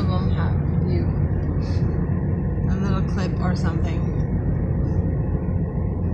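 Steady low rumble of road and engine noise inside a moving car's cabin, with a faint voice briefly about halfway through.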